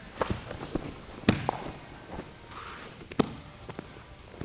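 Bare feet stepping and shuffling on foam grappling mats during a double leg takedown, with sharp slaps and thuds as one man is lifted and brought down onto the mat. The two loudest impacts come about a second in and about three seconds in.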